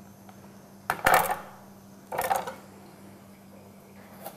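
Kitchen knife cutting a red onion on a wooden cutting board: two separate cuts, one about a second in and one a little after two seconds.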